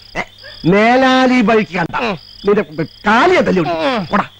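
A man's long drawn-out cry about a second in, among short bursts of shouted speech, over a steady background of chirping crickets.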